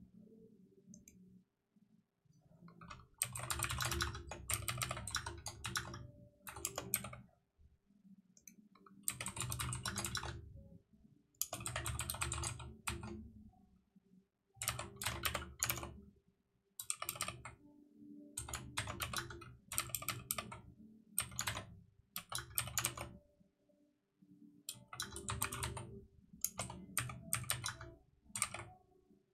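Computer keyboard typing in bursts of rapid keystrokes separated by short pauses, starting about three seconds in.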